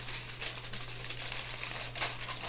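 Aluminium foil being folded and crimped by hand around a foil pack: a soft, irregular crinkling rustle.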